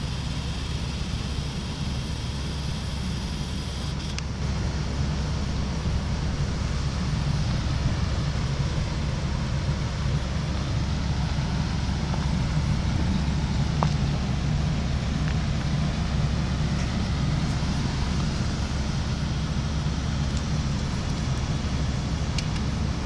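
Helicopter running steadily, a continuous low rumble of rotor and engine.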